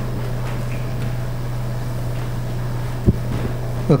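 Steady low hum of room tone, with one brief low thump about three seconds in.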